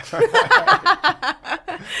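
People laughing: a quick run of laughing pulses, about five a second, trailing off into a breathy rush near the end.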